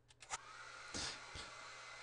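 Handheld hair dryer coming on about half a second in and blowing steadily but faintly, drying wet acrylic paint splatters on a canvas.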